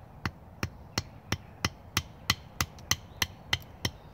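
A wooden baton gently tapping the spine of a knife laid across the end of a wooden stake, about a dozen light, evenly spaced knocks at roughly three a second, driving the blade down into the wood.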